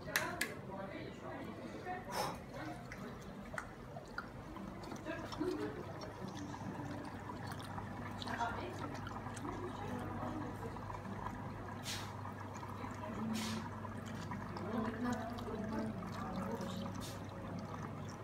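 Bourbon poured from a glass bottle through a funnel into a small oak barrel, running and trickling steadily, with a few sharp clicks along the way.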